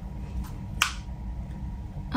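A single sharp plastic click about a second in, from a DJI Osmo Pocket 3 being switched on, over quiet room tone.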